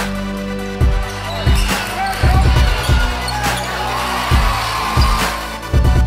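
Background music with a heavy bass-drum beat: deep thumps recurring every half second or so over held tones.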